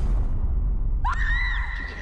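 A deep low rumble, then about a second in a high-pitched scream that rises sharply and is held for about a second.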